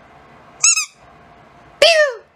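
Spiky rubber squeaky ball squeezed in the hand, giving two short squeaks: a high one about half a second in and a lower one near the end that drops in pitch.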